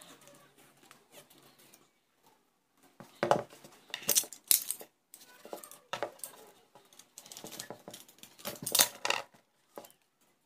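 Handling noise on a tabletop: sharp knocks and clacks of small hard objects, with rustling in between, loudest in two clusters, one a few seconds in and another near the end.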